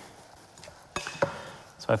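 A wooden spoon working stuffing through in a glass mixing bowl. About a second in it knocks twice against the glass, followed by a soft scraping of the mixture.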